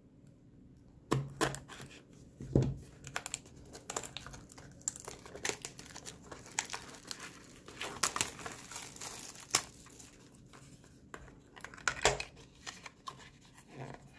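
Plastic shrink-wrap being cut with a knife and peeled off a cardboard trading-card box, crinkling and tearing in irregular crackles, with a few handling knocks on the box.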